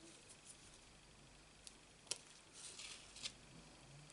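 Near silence with a few faint, small clicks, the sharpest about two seconds in, and a brief scratchy rubbing just before three seconds in: a pointed craft tool and fingertips picking and pressing adhesive gems onto card stock.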